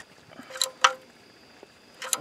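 Two sharp metallic clicks about a quarter second apart, the second louder, from a ratchet and socket being worked on a car's oil filter.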